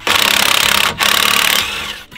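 Cordless impact wrench hammering on a Smart car's lug nut to take it off, in two loud rattling bursts of about a second each with a short break between.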